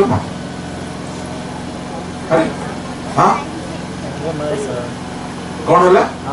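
A man's voice through a microphone and loudspeaker, a few short bursts of speech with pauses between, over a steady background hum.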